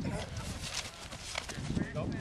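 Players' feet scuffing and pounding the grass, with contact noises, during a one-on-one pass-rush rep. Voices of onlookers come in near the end.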